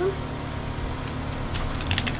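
Steady low mechanical hum in the background, with a few soft clicks near the end.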